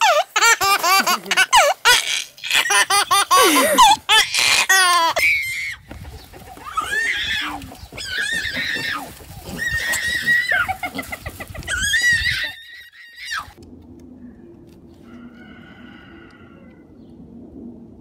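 Laughter for the first five seconds or so, then a run of short high squeals about a second apart, then quieter faint sounds near the end.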